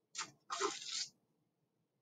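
A paper towel rustling and crinkling in two short bursts, as it is pulled loose from inside a soft clay cylinder.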